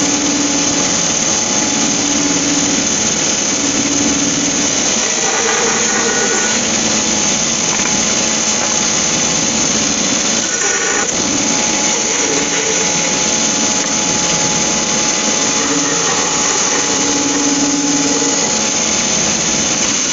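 Bandsaw running steadily while a small piece of yew is fed by hand into the blade to cut a curved shape, with the tone of the cut coming and going as the wood meets the blade.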